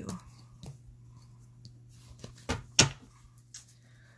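Tarot cards being handled and set down: a few light taps and clicks, with one sharp knock near three seconds in, over a low steady hum.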